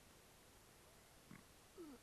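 Near silence: room tone, broken near the end by two faint, brief sounds, the second a short falling tone.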